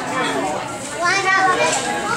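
Children and adults talking excitedly and laughing, with high-pitched voices rising about a second in.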